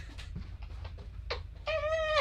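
A woman's brief high-pitched squeal, held for about half a second near the end, after a single sharp click, over a low steady hum.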